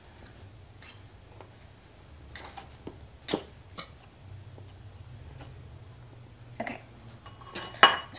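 Wire whisk clinking and scraping against a stainless steel bowl while stirring dry cake ingredients, in light, irregular taps with one sharper clink about a third of the way in. A louder clatter near the end, as the whisk leaves the bowl.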